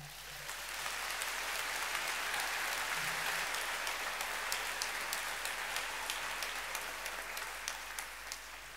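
Concert audience applauding between songs: a dense wash of clapping that swells in at the start, holds steady and thins slightly near the end.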